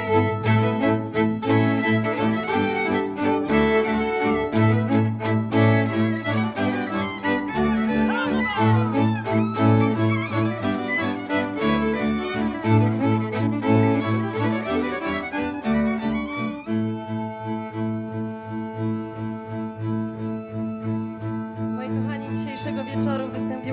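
Folk string band of four violins and a bowed double bass playing a lively, rhythmic tune in the style of the Beskid Żywiecki highlands. About three-quarters of the way through, the quick bow strokes give way to long held chords and the playing drops a little in loudness.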